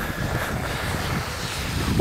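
Wind blowing on the camera microphone: a steady, low rumbling noise.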